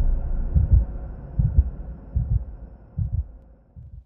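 A heartbeat sound effect: about four deep double thuds, roughly one every 0.8 seconds, fading away.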